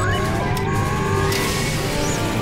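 Sci-fi sound effects over background music: several rising power-up whines, then a sudden burst of electrical crackling about a second and a half in as lightning charges the pods.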